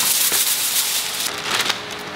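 Crinkling and crackling of a shiny plastic food bag being handled, loudest in the first second or so and easing off after.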